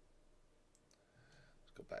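Near silence with a few faint, sharp clicks about a second in.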